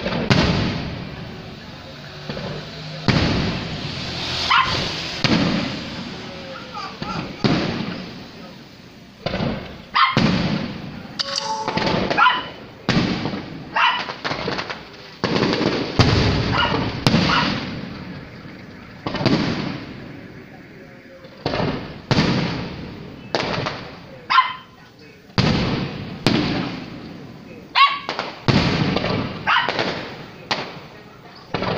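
Aerial firework shells bursting in a long series, a sharp bang every second or two, each trailing off in a rolling echo.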